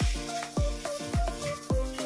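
Background music with a steady beat: a deep bass drum hit falls in pitch roughly every half second under held synth notes.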